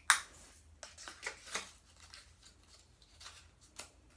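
Fingers unwrapping a small plastic-wrapped cosmetic item: a sharp click at the start, then scattered crinkles and clicks of the packaging, with one more sharp click near the end.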